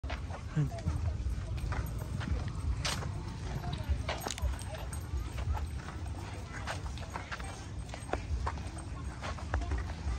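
Outdoor ambience: scattered distant voices and short clicks and knocks over a steady low rumble.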